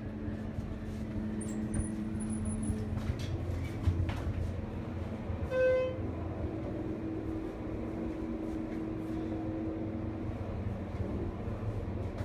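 A Westinghouse hydraulic elevator, modernized by Schindler, travelling with the car's steady low hum and rumble. A single electronic chime sounds about halfway through, and a steady tone is heard for several seconds after it.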